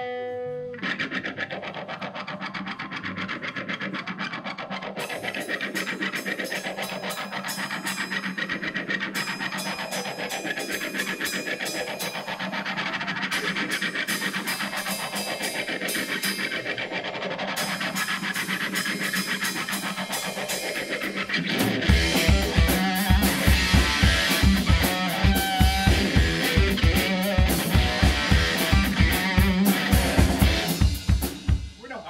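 Live rock band intro: an electric guitar makes a scraping, rasping sound through a sweeping effect that rises and falls every few seconds. About twenty seconds in, a fast, pulsing low beat of bass and drums joins.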